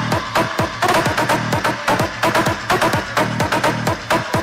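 Electronic dance music with a steady kick-drum beat.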